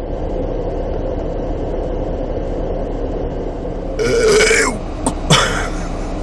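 Steady low hum of a car idling, heard from inside the cabin. About four seconds in, a man burps loudly for about half a second after a big meal, and a short sharp noise follows a second later.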